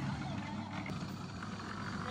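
Steady low drone of an engine-driven drum concrete mixer running.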